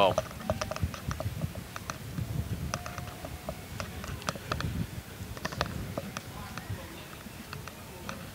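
Low wind rumble on the microphone, with scattered sharp clicks and taps throughout.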